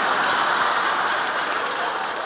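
A large audience laughing together, a dense wash of many voices that slowly eases off.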